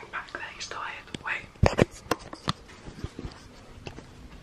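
A man whispering close to the microphone, then a quick run of sharp clicks and knocks about one and a half to two and a half seconds in.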